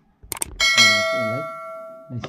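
Subscribe-button sound effect: a quick double mouse click, then a bell ding that rings on and fades away over about a second and a half.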